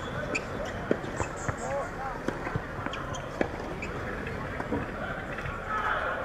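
A tennis ball bounced several times on a hard court by the server before serving: short, sharp knocks at an uneven pace, over steady outdoor background noise.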